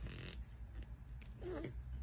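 Flat-faced, long-haired cat at its food plate, making animal noises: a short noisy sniff at the very start, then a brief wavering vocal sound about a second and a half in.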